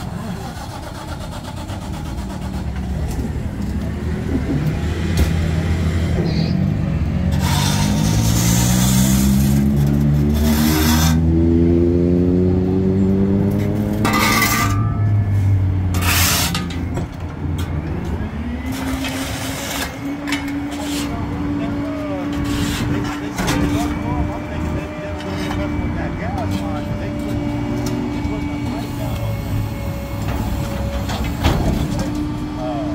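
Rear-loading garbage truck's engine speeding up under hydraulic load, rising steadily in pitch for about ten seconds, with several loud hissing, clattering bursts as the packer and bin lifter work. It then settles into a steady high whine while the lifter tips its bin.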